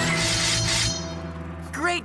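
Cartoon crash-and-shatter sound effect of metal robots being sliced to pieces, over background music. The crashing cuts off about a second in, and a voice begins near the end.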